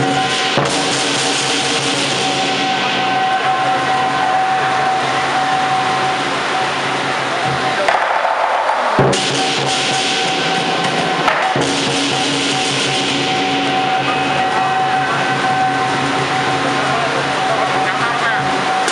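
Lion dance percussion: a large Chinese lion drum played continuously with clashing hand cymbals ringing over it. The drumming breaks off briefly about eight seconds in and comes back with a sharp strike.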